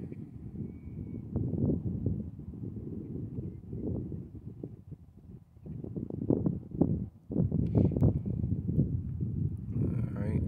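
Wind buffeting the microphone: a low, gusty rumble that rises and falls, dropping away briefly about five and a half and seven seconds in.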